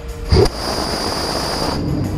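Close-in weapon system gun firing a burst: a loud opening report about a third of a second in, then a continuous rasping stream of fire with a high whine, cutting off suddenly just before the end.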